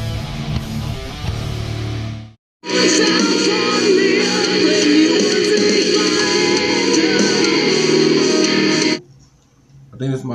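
German metal song with distorted guitars and a woman singing, with a brief total dropout about two and a half seconds in. The music cuts off suddenly about nine seconds in, leaving faint room noise.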